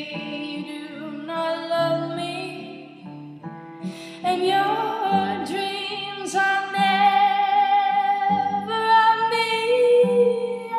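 A song: a woman singing long, held notes over plucked-string accompaniment. It dips quieter about three seconds in, then swells louder for the rest.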